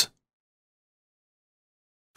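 Silence: the soundtrack drops out completely just after the last word of the narration ends.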